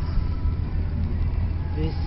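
Steady low rumble of wind buffeting the microphone, with a man's voice starting near the end.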